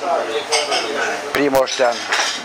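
A man speaking, with three sharp clicks close together about one and a half seconds in.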